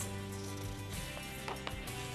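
Quiet background music of steady sustained tones, with a few soft plucked notes.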